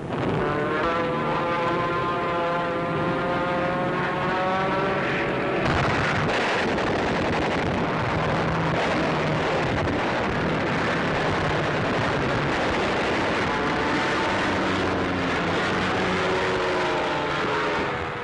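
Propeller aircraft engines droning, their pitch rising slightly over the first five seconds or so. This gives way to a rougher, noisier din in the middle, and the pitched drone returns near the end with its pitch gliding.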